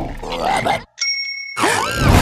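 A single bell-like ding about a second in, steady ringing tones lasting about half a second, just after a brief drop to silence. Before and after it come short wavering pitched sounds.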